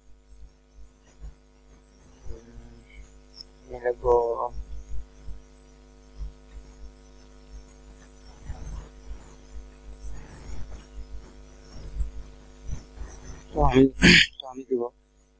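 A steady electrical mains hum, with a person coughing about four seconds in.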